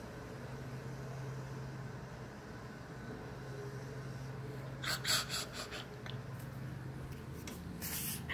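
A woman coughs in a short burst about five seconds in, over a steady low hum.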